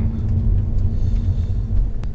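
Honda Odyssey RB3 heard from inside the cabin while driving along a narrow mountain road: a steady low rumble of tyres and running gear, with a constant low hum.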